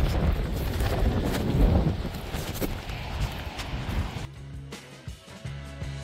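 Wind buffeting the microphone as a dull, uneven rumble. About four seconds in it cuts off and background music takes over.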